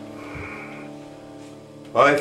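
Piano and violin playing soft held notes that slowly fade: the instrumental accompaniment before the singing comes in.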